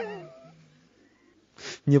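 A man's voice trailing off in a drawn-out, falling sound, then a pause of near silence before he speaks again near the end.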